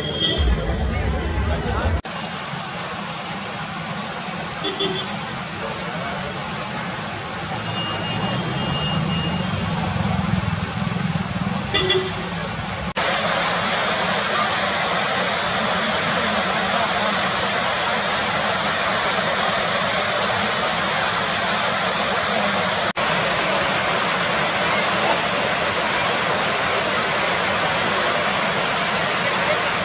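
Street traffic with vehicle horns tooting briefly several times. About halfway through it changes suddenly to the steady, louder rush of a waterfall.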